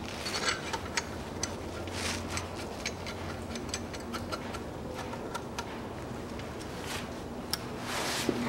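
A small wrench working the nuts on the exhaust manifold studs, giving light, irregular metallic clicks and taps, roughly three a second.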